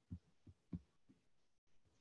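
Near silence in a pause between speakers, with three faint soft thumps in the first second.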